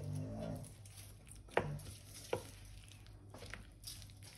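Metal spoon stirring a thick chili-paste sauce in a ceramic bowl, a soft wet scraping broken by two sharp clinks of the spoon against the bowl about a second and a half and two and a half seconds in.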